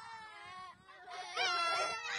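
Young children's voices imitating a husky's howl: a faint, high, wavering call, then a louder, held one about a second and a half in.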